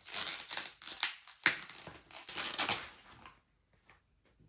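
Crinkling and rustling of the white packaging wrap as a new camera body is unwrapped by hand, with a few sharper crackles. It stops a little after three seconds in.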